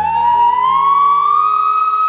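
Bansuri (Indian bamboo flute) playing one long note that glides slowly upward and is then held, over steady low accompaniment from the band.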